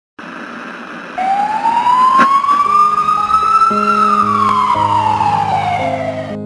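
A single slow siren wail with a noisy hiss under it, rising in pitch from about a second in and falling away over the last two seconds, with a short click in the middle. Steady musical notes come in beneath it about halfway through.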